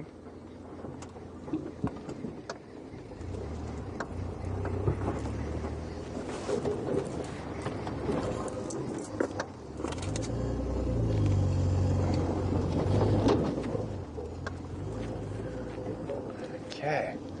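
Open safari vehicle driving over a rough dirt track: the engine rumbles, with scattered knocks along the way. The engine grows louder from about three seconds in, is loudest between about ten and thirteen seconds, then eases off.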